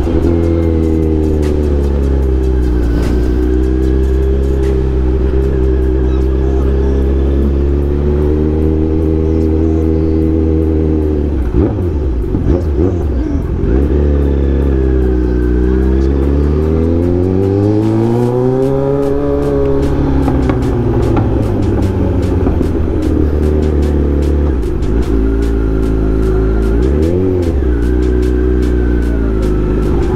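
Kawasaki Z900 inline-four superbike running loud at low speed. The engine note rises and falls with throttle blips: a dip about twelve seconds in, a longer swell midway, and a quick rev near the end.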